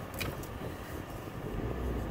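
Car cabin noise while driving: the engine and tyres make a steady low rumble that grows stronger about a second and a half in.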